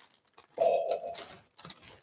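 Thin plastic bag crinkling as it is handled, with one half-second burst of rustling about half a second in, then faint scattered crackles.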